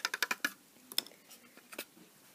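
Stirring a cup of salt solution: a rapid run of light clicks from the stirrer against the cup that stops about half a second in, followed by two faint single ticks.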